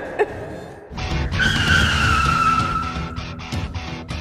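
Car tyres screeching in one long skid whose pitch falls slowly over about a second and a half, over dramatic background music.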